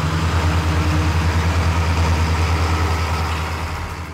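John Deere 7800 tractor's diesel engine running steadily, a low, fast, even pulse that eases off slightly near the end.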